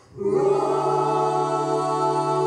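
Jazz vocal ensemble singing in close harmony: after a brief break at the very start, the voices come in together on a new chord and hold it steadily.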